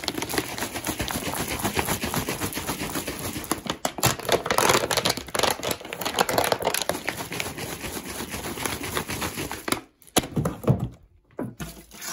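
Crinkling and rustling of clear plastic wrap handled by fingers, a dense crackle full of small clicks and taps. Near the end it stops briefly, then a few sharp separate taps follow.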